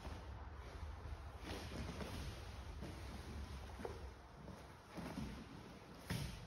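Faint rustling of gi cloth and soft scuffs of bare feet and bodies shifting on grappling mats as two grapplers move. A low steady hum fades out about four seconds in.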